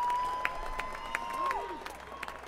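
Concert audience applauding and cheering, with one long whistle that holds steady, then drops in pitch about three-quarters of the way through. The clapping is sparse and thins out toward the end.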